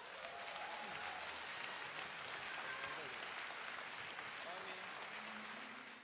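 Large concert audience applauding: a steady, even clatter of many hands clapping, with a few voices calling out over it.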